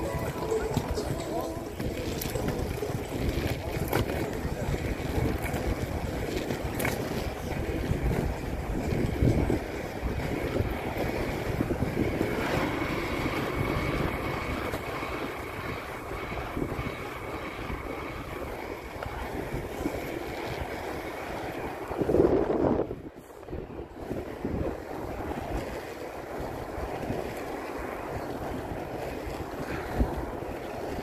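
Steady rumble of inline skate wheels rolling over pavement, with wind buffeting the phone's microphone and a few sharp clicks. A louder gust comes about three quarters of the way through, then the sound briefly drops away.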